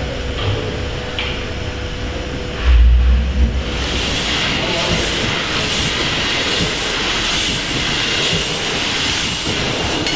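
Stationary steam engine running, with a heavy low thump about three seconds in. From about four seconds, escaping steam hisses loudly in rhythmic puffs, about three every two seconds, in time with the engine's strokes.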